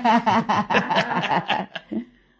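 Laughter: a run of quick chuckling bursts that stops just before the end.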